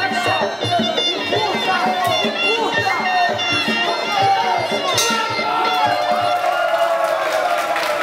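Traditional Muay Thai fight music (sarama): a wailing, reedy pi oboe melody that bends up and down over a regular drum beat, with crowd noise and shouting beneath it.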